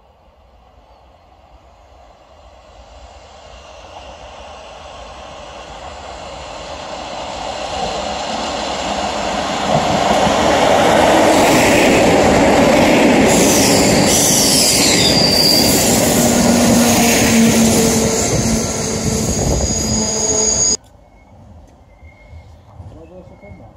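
Regional passenger train approaching and rolling past close by. It grows louder over about ten seconds into a loud, steady rush of wheels on rail, with high wheel squeals gliding up and down as the cars go by. The sound cuts off abruptly about a second before the end.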